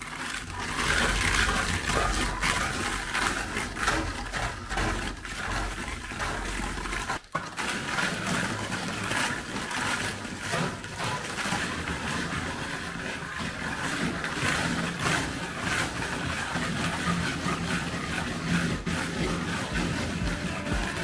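Plastic float scraping across wet textured thin-coat render in repeated gritty strokes, smoothing out drag marks in the finish.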